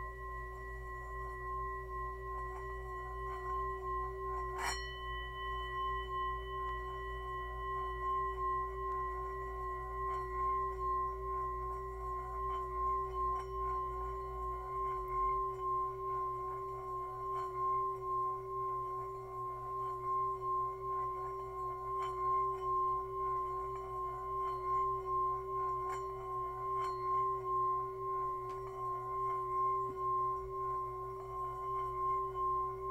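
Brass singing bowl sung by rubbing a wooden striker around its rim: a steady ringing hum with a low tone and a higher one, wavering in regular pulses and slowly swelling. One sharp tap against the bowl about five seconds in.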